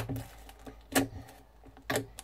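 Fluffy slime squeezed and pressed by hand, giving three sharp clicking pops as trapped air bubbles burst: one at the start, one about a second in, one near the end.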